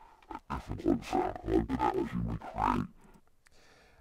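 Recorded spoken dialogue, pitched down, distorted and run through modulated EQ and a filter in Ableton Live, playing back as a neurofunk bass sound with a choppy, speech-like rhythm of syllables. A filtered and an unfiltered copy are blended together. It stops about three seconds in.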